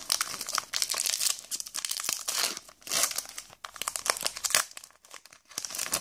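Foil booster pack wrapper crinkling and tearing as it is opened by hand, in dense crackles that thin out about five seconds in before one last burst near the end.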